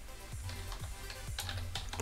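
Typing on a computer keyboard: a quick, irregular run of keystrokes over steady background music.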